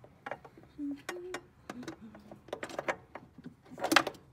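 Irregular small metallic clicks and taps as a bolt and hands work against the clutch master cylinder mount and the metal brake lines while lining up the mounting holes, with a louder knock near the end.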